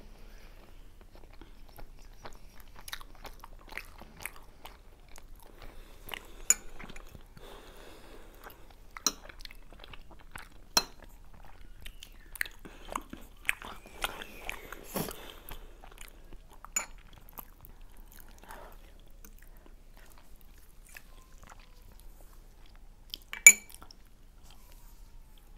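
Two people chewing soft pan-fried dumplings filled with potato and mushrooms, close to the microphone, with wet mouth sounds and scattered sharp clicks; the loudest clicks come near the end.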